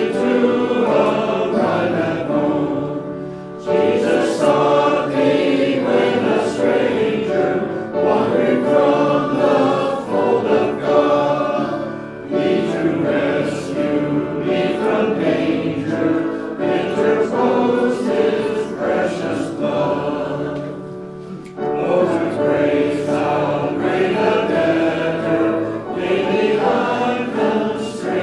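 A church congregation singing a hymn, in lines with brief pauses between them.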